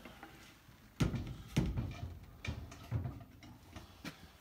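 A few knocks and bumps from things being handled: a sharp one about a second in, another about half a second later, then softer ones, over low handling rumble.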